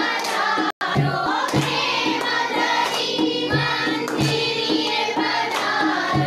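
A group of worshippers singing a devotional song together, over a regular beat. The sound cuts out completely for a split second near the start.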